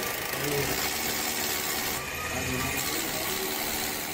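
Worn-out cordless drill running steadily with a harsh hiss, while flame spits from its motor housing.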